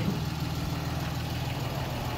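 Ram 3500 pickup truck engine idling steadily, a low even rumble.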